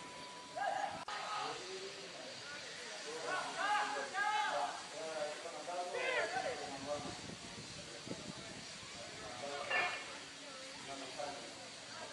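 Scattered distant shouts and calls of voices, a few seconds apart, over a steady hiss.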